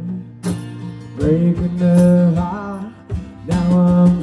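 Live music: a strummed acoustic guitar with a man singing a sustained vocal line, the singing pausing briefly early on and returning about a second in and again near the end.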